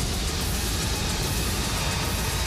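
Sci-fi film trailer soundtrack: a continuous heavy rumbling rush of noise under music, the sound effects of a starship hull being hit and blown apart.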